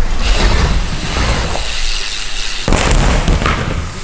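Loud rushing rumble with a heavy low buffeting, the noise of a BMX riding fast on the ramps close to the microphone. A sharp knock breaks it about two and a half seconds in, and the rumble carries on after it.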